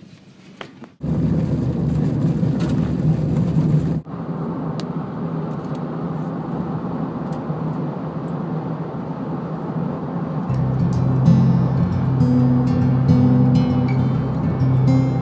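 Vehicle driving with steady road and tyre noise: loud on a gravel road from about a second in, then smoother and quieter on paved road after an abrupt change. Background music comes in over it near the end.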